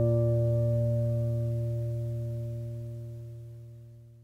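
Closing background music: the last acoustic guitar chord, struck just before, ringing out and fading steadily away.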